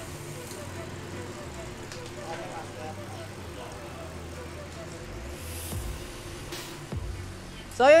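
Low, steady background noise with faint music, and a couple of light clicks about seven seconds in.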